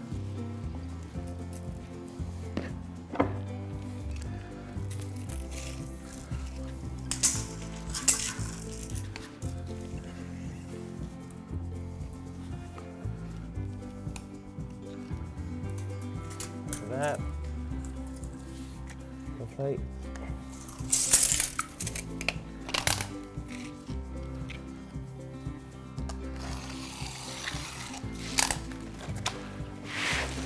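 Background music with steady chords, over which a few short scraping, rasping sounds come and go, the strongest about two-thirds of the way through: a knife cutting roofing felt along a wooden straight edge.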